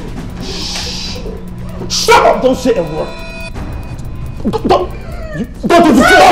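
Film soundtrack music under frightened human voices: cries and whimpers from the captives, with loud outbursts about two seconds in and again near the end.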